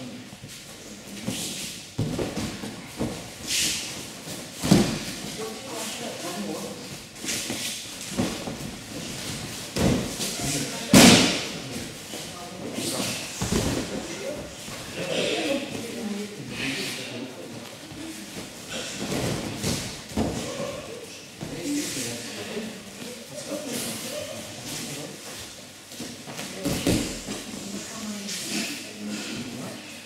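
Low talking broken by several thuds and slaps on judo tatami, as a judoka is swept to the mat and breaks her fall. The loudest, sharpest slap comes about a third of the way through.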